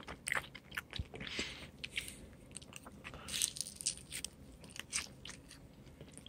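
A person chewing a bite of garlic knot close to the microphone: irregular small mouth clicks, with a couple of louder chewing noises about a second and a half in and just past the middle.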